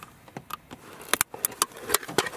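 A string of sharp plastic clicks and snaps as a small screwdriver presses the retaining tab of a plastic dash-cam windshield cover and the cover piece is worked free, most of them in the second half.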